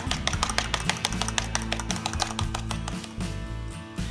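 An egg being beaten by hand in a small plastic bowl: rapid, even clicking of the utensil against the bowl, thinning out after about three seconds, over background music with a plucked-string sound.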